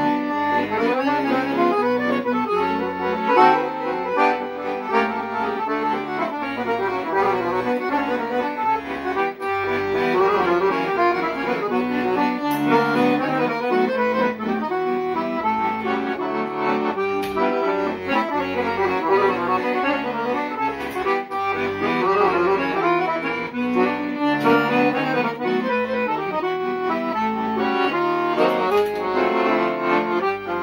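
Piano accordion played solo: a fast, busy right-hand melody over a steady, evenly pulsing bass-and-chord accompaniment.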